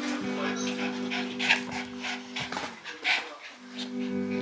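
Background music with a toy poodle making short sounds close to the microphone, the loudest about a second and a half in and again about three seconds in.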